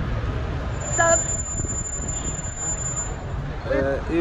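Road traffic on a busy city street: a steady low rumble of passing cars and buses. A brief voice sounds about a second in, a thin high steady tone runs through the middle, and speech begins near the end.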